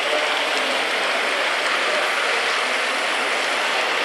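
Steady crowd hubbub of visitors milling around an exhibition: an even mix of indistinct voices and movement with no single event standing out.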